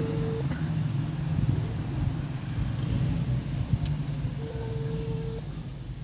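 Mobile phone ringback tone on speakerphone: a steady beep about a second long at the start and again near the end, the ringing of an outgoing call that is not yet answered. A steady low rumble runs underneath.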